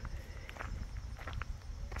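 A few faint, scattered footsteps over a low steady rumble.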